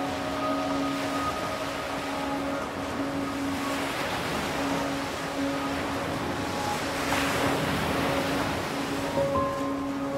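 Ocean surf washing on a beach, with the wave noise swelling about seven seconds in, under soft ambient music of long held notes.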